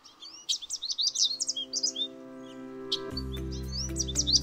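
Small songbirds chirping in quick, rapid calls over gentle background music; the music fills out with a deeper bass about three seconds in.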